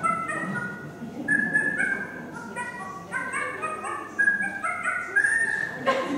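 A recording of animal sounds, with a dog yipping and barking among them, set to music and played back through loudspeakers in a hall. It runs as a string of short, pitched notes that step up and down.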